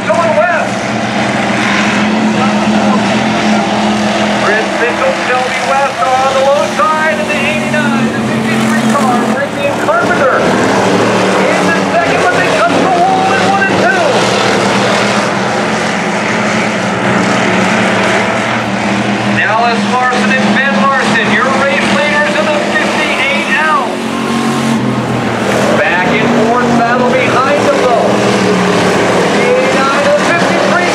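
Dirt-track race car engines running as the cars circle the oval, with people's voices over them.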